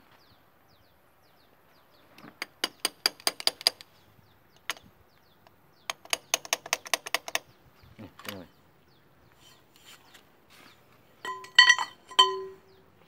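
Rapid light hammer taps on the steel bearing and gear of an excavator final drive, two quick runs of about a second and a half each, every tap ringing. Loud ringing metal clinks near the end.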